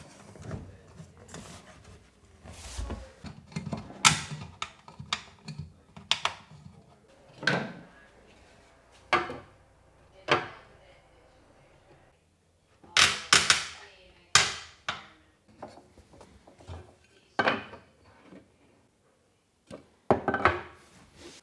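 Scattered knocks and clacks from work on a kitchen base unit: its adjustable legs being turned and a spirit level set down and moved on its top. The knocks come singly with quiet gaps, with a quick run of them about thirteen seconds in.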